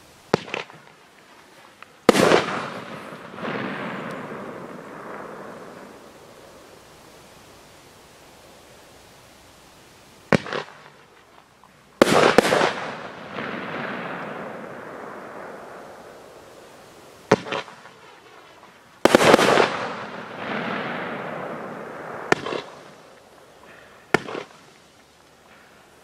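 Fireworks shells fired one at a time, three times over: each time a short sharp launch report, then about a second and a half later a louder burst bang whose sound fades out over several seconds. Another short crack comes near the end.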